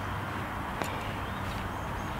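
A single sharp click of a golf putter striking a ball, a little under a second in, over a steady outdoor background hiss.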